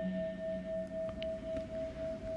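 A single steady ringing tone, like a singing bowl or bell, held with a slow wavering in loudness between lines of chanted sutra.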